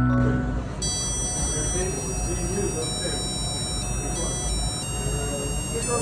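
A music note dies away at the start, then indistinct voices talk over a steady background noise, with several thin, high, steady tones above them.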